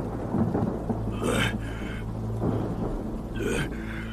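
Film sound effects of thunder rumbling with rain, over a steady low drone. Short, sharper bursts come about a second in and again near the end.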